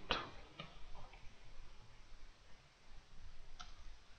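Computer keyboard keys being typed: a few faint, separate clicks, the sharpest near the end.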